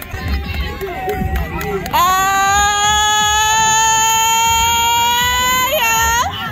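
A long, high-pitched cheering scream held for nearly four seconds, rising slightly in pitch, over crowd chatter. It celebrates a play.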